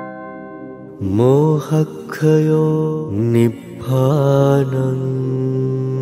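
Devotional chanting by a single voice in long held notes that glide and waver in pitch, over a steady sustained drone; the drone sounds alone for about the first second before the voice enters.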